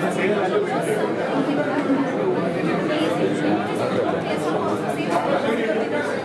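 Many people talking at once: a steady hubbub of overlapping voices from a crowd packed into an office.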